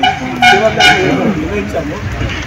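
A vehicle horn sounds two short toots, about half a second in and again just under a second in, over a man speaking.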